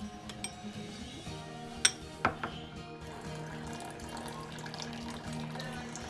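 Background music, with a metal spoon clinking twice on a ceramic bowl about two seconds in. Near the end, tea is poured into a cup with a faint trickle.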